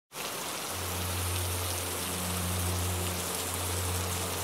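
Steady rain pattering in a rainforest. A low, sustained musical drone note enters under it just under a second in.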